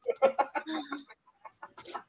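People laughing over a video call in a run of quick, choppy bursts that thin out after about a second.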